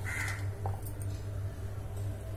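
A single short bird call right at the start, over a steady low hum.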